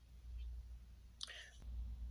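A person whispering briefly, a short breathy sound about a second in, over a steady low hum.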